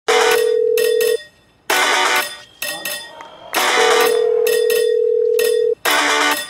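Electric fencing scoring machine buzzer sounding twice, a steady tone about a second long and then a longer one of about two seconds, amid loud bursts of other noise.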